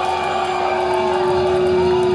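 Black metal band playing live through loud amplification: a distorted electric guitar note held ringing as a steady drone under a dense, noisy wash.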